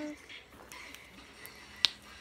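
Slime stretched and squeezed between the hands with faint handling noise, and one sharp pop near the end.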